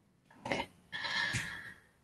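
A woman's soft, quiet 'okay' over a video-call microphone, followed about a second in by a faint, brief breathy sound with a thin steady whistle-like tone lasting under a second.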